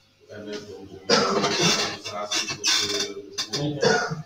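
Indistinct speech, with voices talking away from the microphone. It grows louder and fuller about a second in.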